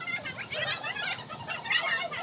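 A group of women talking, laughing and calling out over one another in excited, high-pitched chatter, many voices at once with no pause.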